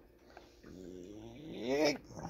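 A low, drawn-out vocal sound that grows louder and rises in pitch near the end, lasting about a second and a half.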